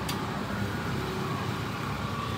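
Steady outdoor street background noise, an even hum like passing traffic, with one faint click just after the start.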